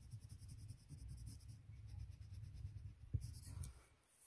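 Spektrum Noir Colour Blend coloured pencil shading on paper in quick, even back-and-forth strokes, filling a swatch, which stop about one and a half seconds in. A single light knock follows a little after three seconds.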